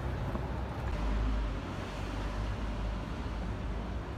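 Low, steady rumble of street traffic, swelling a little about a second in.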